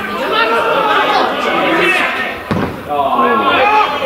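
Men shouting and calling to each other across the field, with one sharp thud about two and a half seconds in as a football is struck hard for a shot on goal.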